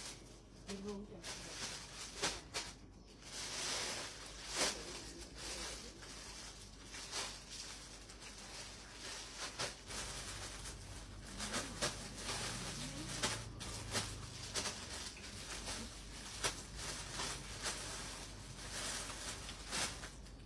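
Rustling and scattered clicks of clothes and hangers being handled, with faint voices in the background.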